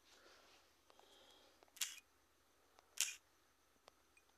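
Faint clicks of fingers tapping and handling a phone, with two short hissy bursts, one a little before two seconds in and one about three seconds in, over quiet room tone.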